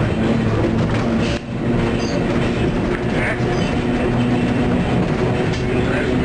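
Sheboygan Light, Power & Railway Co. car 26, an electric interurban car, running along the track: a steady low hum with wheel-on-rail noise. The level dips briefly about one and a half seconds in.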